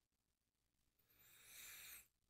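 Near silence, then a faint breath drawn in through the mouth during the second half.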